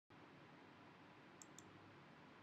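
Near silence: faint room hiss with two tiny, short clicks about a second and a half in.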